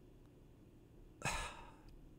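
Near silence, then one short audible breath from a man about a second in.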